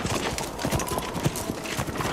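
Clatter of many rapid, irregular footfalls on hard ground, a sound effect for a troop of soldiers charging forward.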